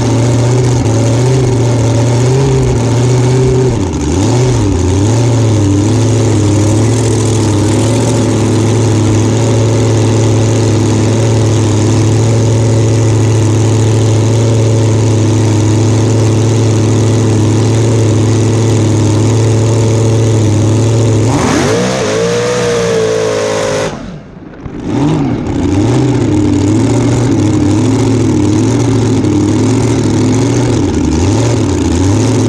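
Blown alcohol 484 Keith Black Hemi with a 14-71 Littlefield supercharger idling unevenly. About 21 seconds in it revs up in a rising sweep, then the sound drops away sharply for about a second before the idle comes back.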